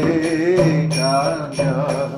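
A man chanting a devotional melody with a wavering voice, accompanied by a few strokes on a mridanga drum. A steady low note is held under the voice from about half a second in.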